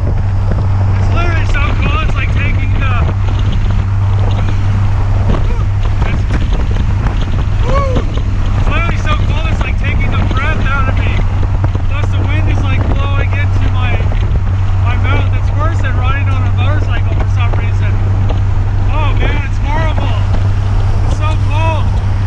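Steady wind noise and engine and road rumble inside the open cabin of a Mitsubishi 3000GT VR-4 driven with no windshield, no glass and no doors.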